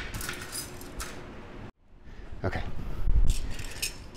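Small squares of thin sheet metal clinking and scraping against one another as they are handled on a wooden workbench. The sound cuts out completely for a moment just before halfway.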